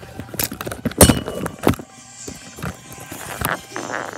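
A run of knocks, clicks and rubbing from objects being handled close to the microphone, the loudest knock about a second in.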